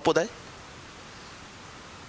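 A man's last spoken syllable cuts off a fraction of a second in, leaving only a steady, even hiss of background noise on the microphone recording.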